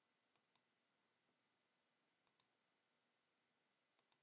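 Near silence, broken by two faint pairs of sharp clicks, the pairs about two seconds apart.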